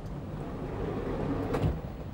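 The mechanism of a homemade coin-operated arcade machine runs as its papier-mâché attendant figure sinks down into the cabinet: a low whir that swells, with a clunk about a second and a half in.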